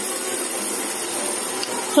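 Gas stove burner running under a pot on the boil, a steady, even rushing hiss.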